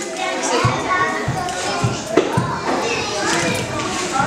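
Many children's voices chattering and playing together in a steady hubbub, with a few short light knocks.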